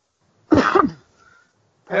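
A person coughing once, briefly, about half a second in.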